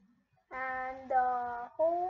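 A young girl's voice drawing out two long, steady notes, starting about half a second in after near silence, then breaking into shorter voiced sounds near the end.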